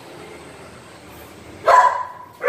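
A dog barks once, a short sharp bark near the end, over faint room hiss.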